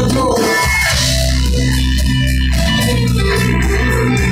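Punk rock band playing live, loud electric guitar and bass with held low notes, recorded on a phone's microphone in the crowd.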